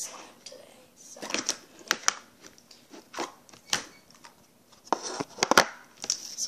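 A plastic slime tub being handled and its lid taken off, then the glittery slime lifted out: a string of sharp plastic clicks and crackles with short quiet gaps, loudest in a quick cluster about five seconds in.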